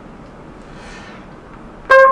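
A quiet pause with a soft breath about a second in, then a trumpet note starts sharply and loud just before the end, the first note of a phrase.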